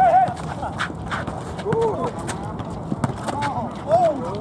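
Pickup basketball on an outdoor asphalt court: the ball bouncing and sneakers hitting the blacktop in scattered knocks, with short shouts from players.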